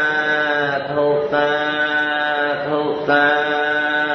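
Buddhist chanting in Pali by a single voice, sung in about three long drawn-out notes, each sliding down in pitch at its end.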